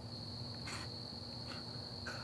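Insects trilling, a steady unbroken high tone, with a brief soft rustle about two-thirds of a second in.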